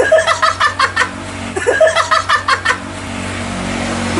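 Hearty laughter in two bouts of quick, stuttering bursts, the first in the opening second and the second from about one and a half to nearly three seconds in, over a steady low hum.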